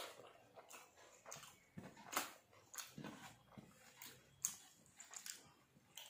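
Faint, irregular chewing and lip-smacking as a mouthful of rice is eaten by hand, about a dozen short wet mouth sounds, the loudest about two seconds in.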